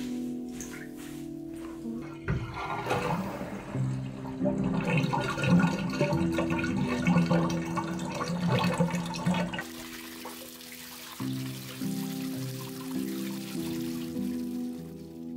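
Water running from a bath tap into a bathtub, starting about two seconds in and stopping near ten seconds, over background music.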